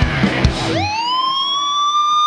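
Live rock band playing with drum hits. About two thirds of a second in, the band drops out and a single electric guitar note swoops up about an octave and holds steady.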